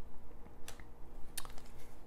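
Plastic Blu-ray case being handled as its hinged disc tray is turned over, with two light plastic clicks a little under a second apart.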